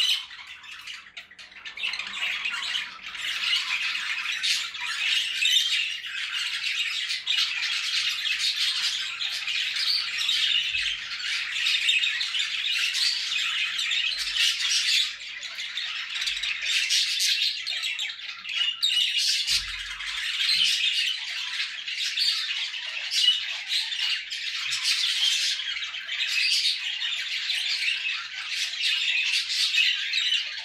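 Budgerigars chattering, a dense, unbroken stream of overlapping chirps and squawks.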